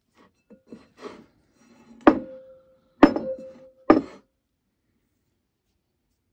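Glass mixing bowl knocked three times about a second apart while bread dough is stretched and folded in it, the first two knocks leaving a short ringing tone. Softer sticky handling sounds of the dough come before the knocks.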